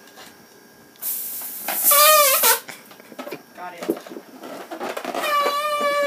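Gas hissing out of a rubber balloon, then the stretched balloon neck squealing in a high, wavering tone. It squeals twice: briefly about two seconds in, and again in a longer, steadier squeal near the end.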